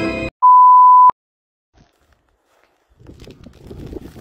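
A single steady electronic beep, one pure tone a little under a second long, loud and cutting off sharply with a click. Music stops just before it, and a low outdoor noise starts near the end.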